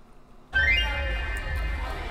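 Near silence, then about half a second in the playing clip's audio cuts in abruptly: a short rising tone, then a steady low rumble underneath.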